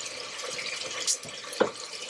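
Arborio rice cooking in white wine, sizzling and simmering in the pot as a steady hiss, with a light knock about one and a half seconds in.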